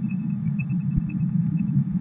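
A steady low background hum, with faint, irregular short high tones above it.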